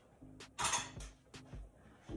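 Quiet kitchen handling: a few faint clicks of a metal spoon and glass jars, with a brief scraping noise a little under a second in.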